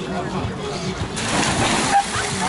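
A person jumping into the sea from a boat, with the splash of the water coming suddenly about a second in and lasting to the end. Voices are heard around it.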